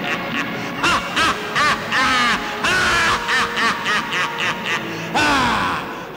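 A man laughing loudly in a long theatrical villain's laugh, about three quick 'ha's a second with a few longer drawn-out ones, over background music.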